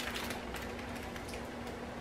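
Faint crinkling and small scattered clicks of clear plastic packets of AB diamond-painting drills being handled and turned over in the hands.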